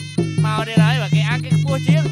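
Traditional Khmer boxing ring music: a sralai (reed oboe) plays bending, gliding phrases with a buzzing tone over a steady drum beat of nearly three strokes a second.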